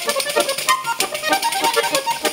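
Trikitixa, a Basque diatonic button accordion, playing a fast arin-arin dance tune in quick, even notes, with a pandero (jingled tambourine) keeping a rapid steady beat.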